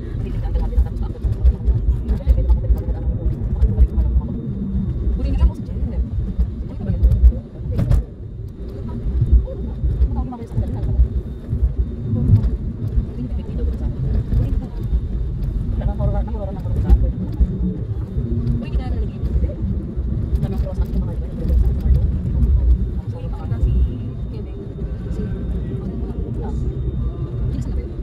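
Road noise inside a moving car's cabin: a continuous low rumble of engine and tyres. A single sharp knock comes about eight seconds in.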